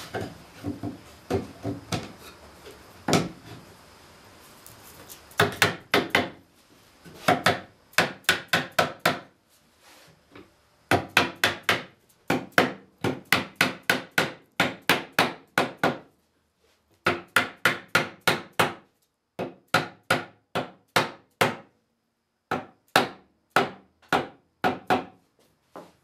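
Runs of quick, sharp knocks, several a second with short pauses between, as a wooden Windsor chair arm rail is hammered down onto its short spindles until it seats on the spindle shoulders. Softer handling knocks come in the first few seconds.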